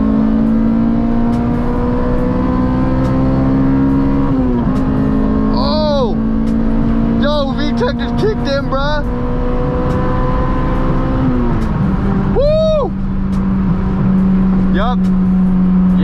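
Honda Integra's VTEC four-cylinder engine heard from inside the cabin during a full-throttle pull with VTEC working, its solenoid wiring freshly resoldered. The revs climb through the gears, and the pitch drops at an upshift about four seconds in and again about eleven seconds in, then holds steady. A voice whoops briefly several times over the engine.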